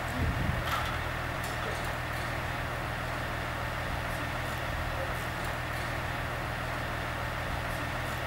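Steady background noise with a low hum and hiss, unchanging throughout.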